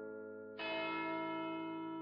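A deep bell tolling slowly. One stroke lands about half a second in and rings on, with the hum of the earlier stroke still sounding beneath it.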